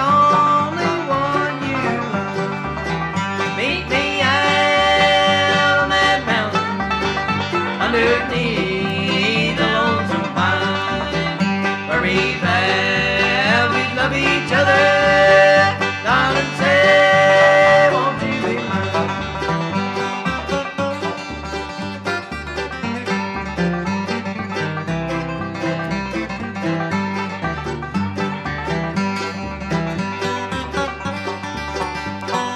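Bluegrass band playing an instrumental break: banjo and acoustic guitar picking over a bass line that alternates between two low notes. For about the first half a lead line of held notes that slide in pitch sits on top, then the texture drops back to the banjo-and-guitar picking.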